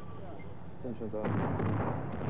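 Military weapons fire breaking out suddenly about a second in: a loud, rumbling din with repeated blasts. A short voice-like sound comes just before it.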